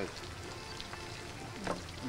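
Steady sizzle of lamb frying in a kazan, a cauldron over a wood fire, with faint background music under it.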